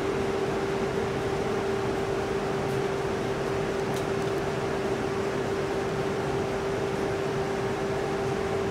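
Steady machinery hum of a large industrial hall, a constant mid-pitched drone over an even rushing noise that does not change.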